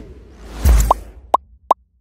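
Animated logo sound effects: a whoosh that swells into a low thump, then three short pops in quick succession, each gliding quickly upward in pitch.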